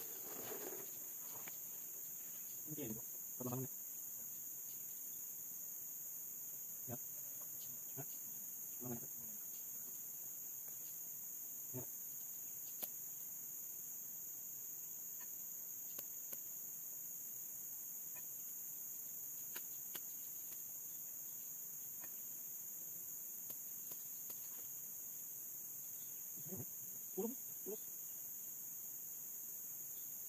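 Steady, high-pitched chorus of insects, faint, with a few short faint voices and light clicks scattered through it.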